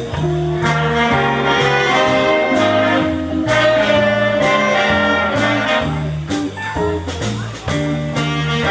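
Live big band playing swing jazz: saxophones and brass sustain chords over a rhythm section of keyboard, upright double bass, electric guitar and drums, with steady drum and cymbal strokes.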